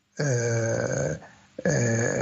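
A man's drawn-out hesitation sound, a held 'ehh' lasting about a second at a steady pitch. His speech resumes near the end.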